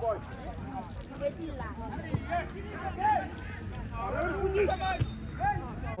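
Players and onlookers shouting and calling to each other during an amateur football match, with a few sharp thuds of the ball being kicked.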